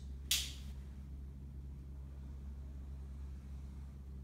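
One brief scratchy stroke of a marker on a whiteboard a moment in, then only a faint steady low hum.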